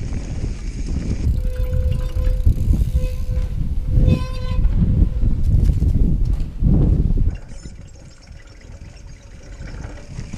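Mountain bike rolling fast over a dirt trail: wind buffeting the microphone over the rumble and rattle of tyres and frame on the ground. A faint steady tone comes and goes a few times in the middle, and the sound drops noticeably for the last few seconds.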